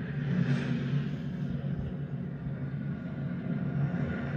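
Low, steady rumbling drone of a film's ominous soundtrack music, played through loudspeakers and picked up in the room.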